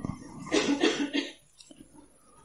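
A man coughing briefly: a short run of quick coughs about half a second in.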